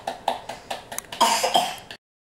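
Hands clapping in a steady rhythm, about four claps a second, then a louder, cough-like burst of voice a little over a second in. The sound cuts off suddenly at the end.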